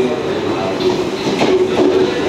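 JR Central 383 series electric multiple unit running into a station platform, its wheels rolling on the rails, with voices over it.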